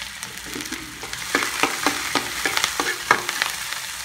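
Chopped onion, garlic and chili sizzling in hot oil in a wok while being stirred, with a quick run of sharp clinks and scrapes against the pan in the middle.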